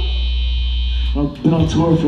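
Steady electrical hum and buzz from the band's instrument amplifiers and PA idling between songs, with a low drone and a thin high whine, cutting off abruptly a little over a second in. A man then starts talking over the PA.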